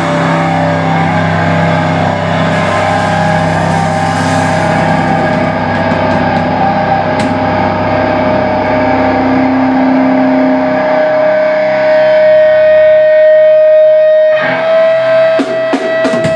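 Live metallic hardcore band: distorted electric guitar and bass let chords ring out with little drumming. In the second half one high sustained tone grows louder, and drum hits return near the end.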